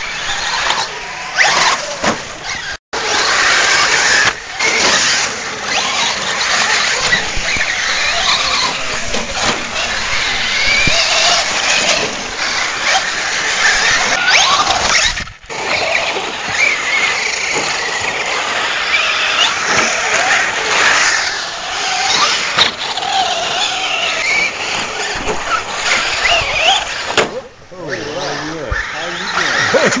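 Radio-controlled cars' motors whining as they are driven around a dirt track, the pitch rising and falling with the throttle.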